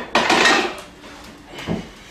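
A barbell being set down on the bench's rack with a loud metallic clatter, followed by a softer knock near the end.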